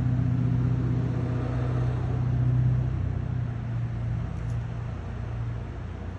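Steady low engine hum of a motor vehicle running nearby, easing off slightly in the second half.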